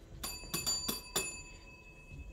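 A tabletop service bell at a front desk struck about five times in quick succession. Its bright ring hangs on after the last strike. This is someone calling for attention at an empty reception.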